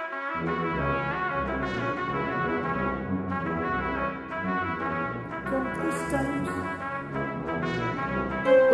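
Orchestral music rendered with virtual (sampled) instruments, brass to the fore over a full orchestra, with deep low notes coming in a moment after the start.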